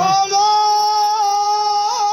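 A qawwali singer holding one long, high sung note, steady in pitch with a slight waver.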